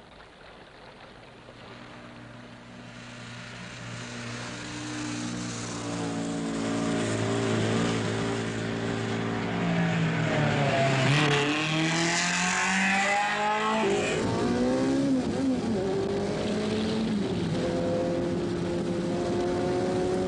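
Rally car engine approaching at speed, growing steadily louder over the first half. Its pitch rises and dips with the revs, then falls quickly as it passes about two-thirds of the way through, and engine sound carries on to the end.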